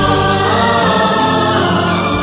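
Hindi film song: wordless, sustained 'aaa' singing over instrumental backing.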